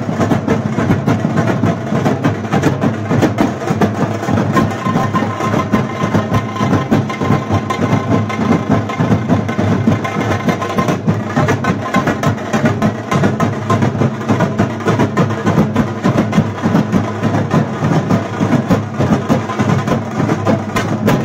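A large drum band: many big double-headed drums beaten with pairs of sticks together, playing a loud, fast, dense rhythm without a break.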